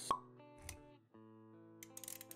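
Intro jingle music for an animated logo, with a sharp pop sound effect just after the start as its loudest moment and a soft low thump a moment later. The music breaks briefly, then resumes with held notes and a few light clicks near the end.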